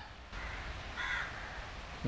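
A crow cawing in the background, one short caw about a second in, over steady outdoor ambience.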